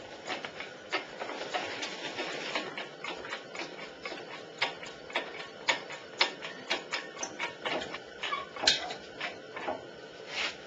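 Irregular sharp metal clicks and clinks of a chain hoist and its lifting chains being worked, with a faint steady hum underneath.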